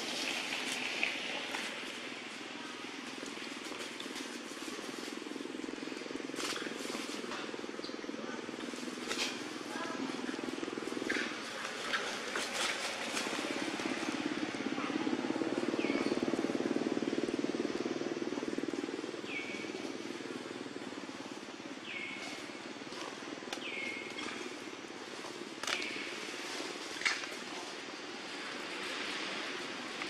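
Outdoor ambience: a steady low hum that swells midway, with scattered clicks and several short, high-pitched chirps in the second half.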